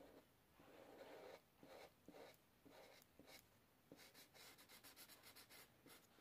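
Faint rubbing of an Ohuhu alcohol marker's nib on paper as it colours in, in separate strokes that come quick and close together in the last two seconds.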